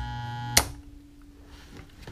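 A 240 V HVAC blower motor, its capacitor in the circuit, switched on through a contactor: a loud electrical buzz for about half a second, a sharp click, then a fainter steady hum as the motor spins up.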